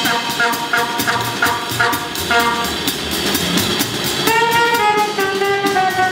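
Free jazz played live by a small group: alto saxophone in short, repeated phrases, then a longer held note about four seconds in that bends down slightly, over cymbal-led drums and double bass.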